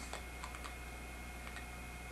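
A few faint, irregularly spaced clicks over a low steady hum.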